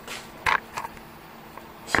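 A few faint clicks and small knocks over a low steady hiss: a sharp click at the start, a short blip about half a second in, and a light tick near the end.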